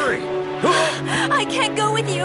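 Urgent, breathy voice acting with voices calling out over sustained background music.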